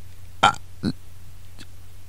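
A man's voice in a pause: a short hesitant 'I' about half a second in, then a second brief vocal sound, over a steady low hum.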